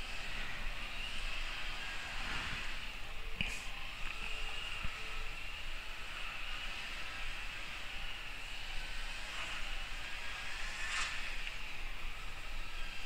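Steady low hiss of background noise, with two faint brief clicks, one about three and a half seconds in and one near the end.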